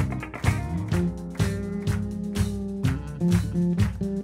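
Live band playing an instrumental passage with no vocals: electric bass walking through low notes, electric guitar and keyboard chords over a steady drum beat.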